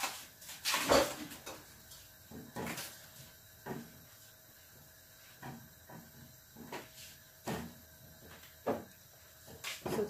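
Scattered knocks and clicks of someone handling things at a kitchen counter, the loudest about a second in.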